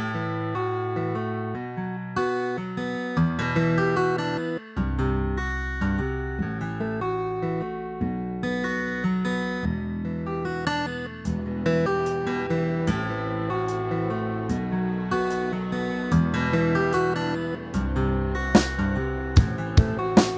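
Solo guitar playing a fingerpicked arrangement, a melody of quick picked notes over bass notes, at about 74 beats a minute.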